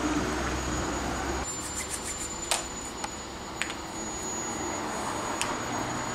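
Steady background noise with a faint high whine, and a few short clicks as a laptop is worked. A low hum drops out about a second and a half in.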